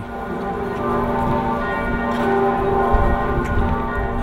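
Church bells ringing, a steady peal of many overlapping tones.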